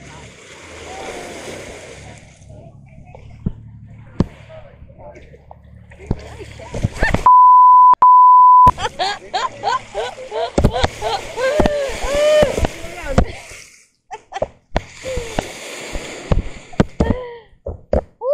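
Surf surging and splashing up a sand beach. About seven seconds in comes a loud steady beep lasting about a second and a half, and then a stretch of excited shouting voices.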